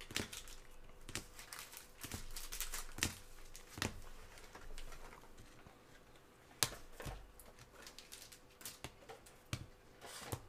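Rigid plastic trading-card holders clicking and clacking against each other and the table as they are handled, stacked and set down. The taps come irregularly, with one sharper clack about two-thirds of the way in.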